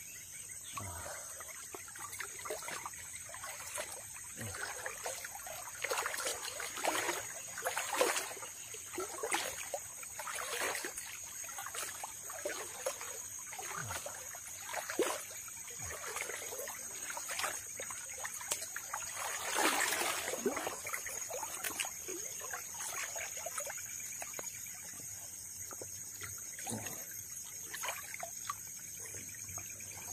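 Muddy river water splashing and sloshing around a person wading through it, in irregular surges with his strides, with a bigger splash about two-thirds of the way in.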